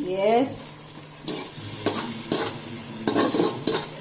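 Wooden spatula scraping a green masala paste out of a steel bowl into an aluminium pressure cooker, with a series of irregular scrapes and knocks against the metal, and the food sizzling in the hot pot.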